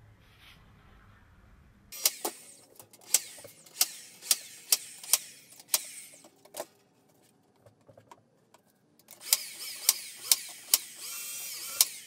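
Nail gun firing nails one after another, about two shots a second, fastening a strip of bender board to the edge of a plywood top. The shots come in two runs with a pause of a couple of seconds between them.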